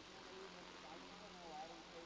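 Near silence: faint background noise, with faint distant voices between about one and one and a half seconds in.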